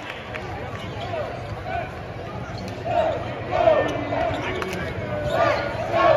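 Basketball game on a hardwood court heard from the arena stands: short sneaker squeaks and ball bounces over a steady crowd murmur, busiest a few seconds in and again near the end.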